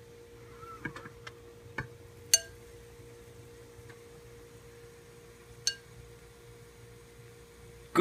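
Glass lid of an Aroma rice cooker lifted off and set down: a few light knocks, then a sharp ringing clink about two and a half seconds in and another clink near six seconds. A faint steady electrical hum runs underneath.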